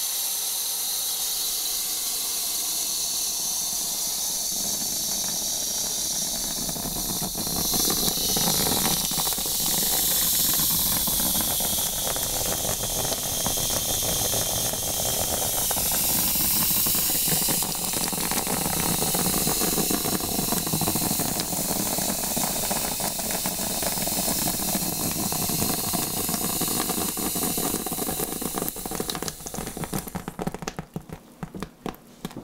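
Handheld shampoo-bowl sprayer running water onto wet hair and scalp: a steady hissing spray that gets louder about eight seconds in and stops right at the end.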